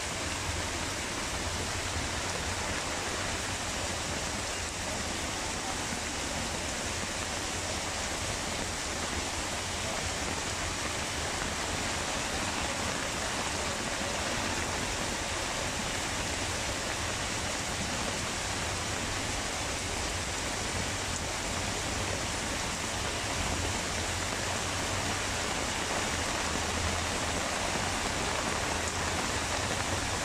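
Heavy, steady downpour of rain: an even, unbroken rush of rain on a tarpaulin roof and flooded ground, with water streaming off the roof edge.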